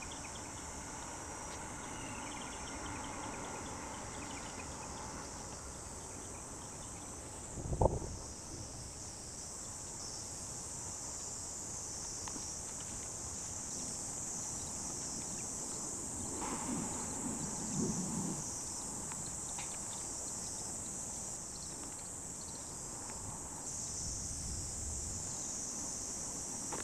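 Steady high-pitched insect chorus. There is one sharp thump about eight seconds in, and some low scraping a little past halfway, as a hoe works the soil of the bed.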